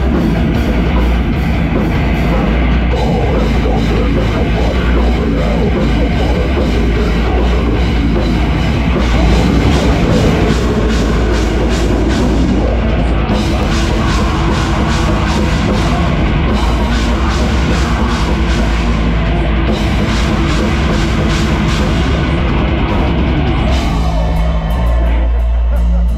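Heavy metal band playing live at full volume: distorted electric guitars over a drum kit, with stretches of fast, even drum strokes in the second half.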